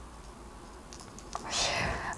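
Quiet room tone with a few faint ticks, then a small mouth click and a short, soft breath in near the end.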